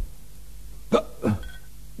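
A man's two short hiccup-like vocal sounds, each dropping in pitch, about a second in and a third of a second apart. In the acted scene they are the first signs of poisoning.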